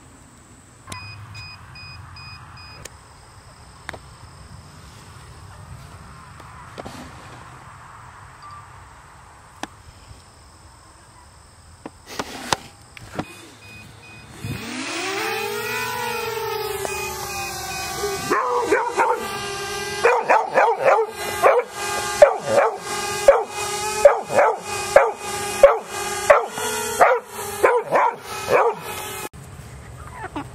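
Small quadcopter drone's motors spinning up with a rising whine about halfway through, then holding a steady whine. Over it, for the last third, a dog barks repeatedly, about twice a second.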